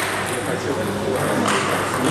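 Table tennis balls clicking off tables and bats, a few separate sharp taps, over a steady murmur of voices in a large hall.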